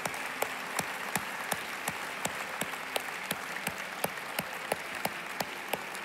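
A congregation applauding. Over it, one person's louder claps close to the microphone keep an even beat of about three a second.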